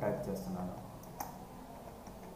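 Computer keyboard being typed on: a few separate light key clicks, one sharper about a second in.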